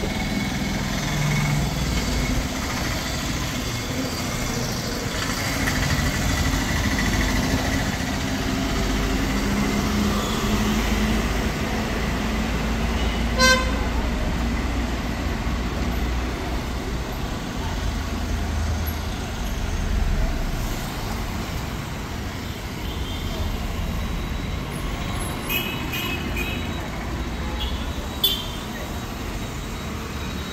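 Street traffic: cars, motor scooters and auto-rickshaws passing with a steady engine and tyre rumble. A short vehicle horn beep sounds about halfway through, and a few more quick horn toots come near the end.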